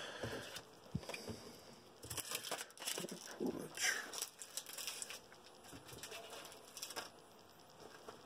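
Intermittent crinkling and rustling of a foil trading-card pack wrapper and cards being handled, with a few light taps.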